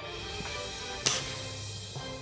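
A single sharp shot from a scoped air rifle about a second in, heard over background music.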